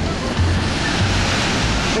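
Vernal Fall's water crashing down close by, a loud, steady rushing roar, with low buffeting rumbles from wind and spray on the microphone.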